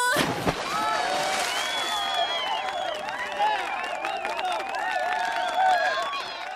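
A person splashing backward into a swimming pool, then a group of people shouting and cheering, several voices at once.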